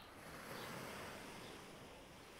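Faint, steady wind and surf noise.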